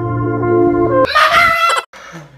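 Soft sustained music chords, then about a second in a rooster crowing loudly for under a second before cutting off abruptly: a morning cue.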